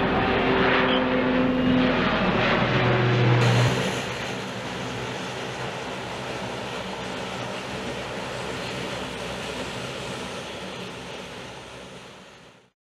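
An approaching aircraft's engines, loud, with several steady tones for about the first four seconds. Then a Bombardier Dash 8 Q400 turboprop's engines run with a quieter, even hum as it taxis, fading near the end.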